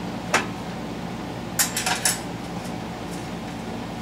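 Small metal clicks and clinks as a Phillips screw is worked out of an ATV rear brake master cylinder held over a sheet-metal drip tray: one sharp click shortly after the start, then a quick cluster of clinks around two seconds in, over a steady low hum.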